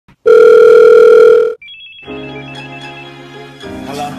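A loud, steady electronic telephone ring tone lasting just over a second, followed by a few short high notes and then slow music with held notes.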